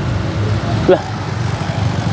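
Steady low rumble of nearby road traffic, with a single short spoken word about a second in.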